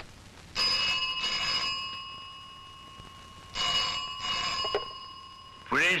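Telephone bell ringing twice, each ring lasting about a second with a pause of about two seconds between them.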